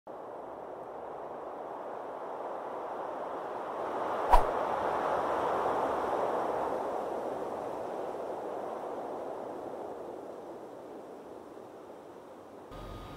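Intro sound effect: a soft, airy whoosh that swells for several seconds and then slowly fades, with one sharp hit a little over four seconds in as its loudest moment.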